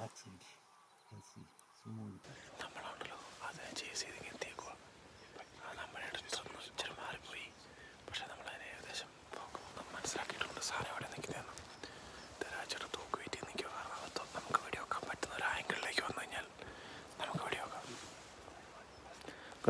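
A man whispering, starting about two seconds in.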